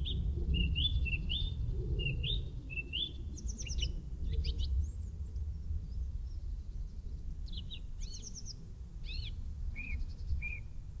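Woodland songbirds chirping and calling: many short rising notes and a few quick trills, scattered throughout, over a steady low rumble.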